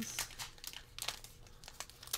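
A 1985 Leaf baseball card wax pack torn open by hand, its paper wrapper crinkling in a run of irregular crackles.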